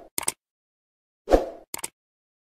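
User-interface sound effects: a soft pop as an animated button appears, followed by a quick double mouse-click, repeating once more about a second and a half later, with silence between.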